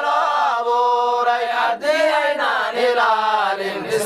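A solo voice chanting a melodic religious nasheed in Arabic, drawing out long, wavering notes over a steady low drone.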